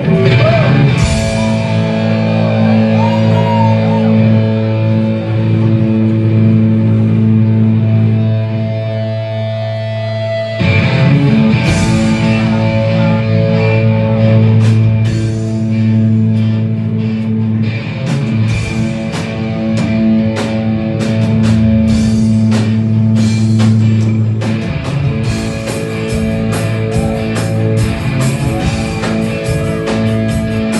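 Live rock band playing: electric guitars hold long ringing chords, a fresh chord is struck about ten seconds in, and the drum hits grow busier through the second half.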